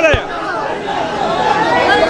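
Several men's voices talking over one another close to the microphone: crowd chatter.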